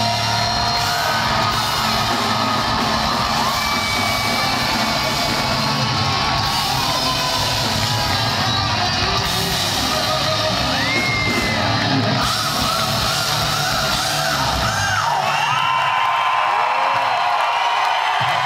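Hard rock band playing live, heard from within the audience, with loud crowd yells and whoops over the music. About fifteen seconds in the bass and drums thin out, leaving crowd cheering and yelling.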